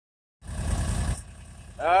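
Argo amphibious ATV's engine idling low, with a louder low rumble for the first second or so before it settles to a quieter steady idle. A man starts speaking just before the end.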